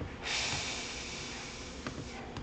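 A long breath out through the nose close to the microphone: a hiss that starts suddenly and trails off over about a second and a half. A single click comes near the end.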